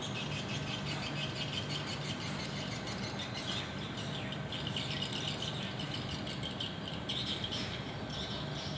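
Small birds chirping repeatedly in the trees, over a steady low hum of outdoor background noise.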